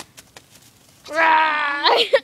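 A single long wailing call about a second in, held at a steady pitch for most of a second and rising at its end, after a few faint clicks.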